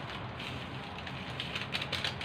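A plastic sachet of rice seasoning rustling and crinkling in the hands as it is shaken out over a bowl of rice, with faint light ticking, a little louder near the end.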